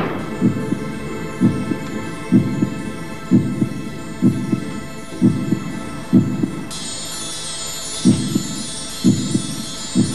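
Soundtrack of slow, heartbeat-like double thumps, about one a second, over a steady sustained drone; about seven seconds in, a high shimmering chime-like layer joins.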